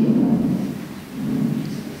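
A low rumbling noise, fading about a second in and swelling again.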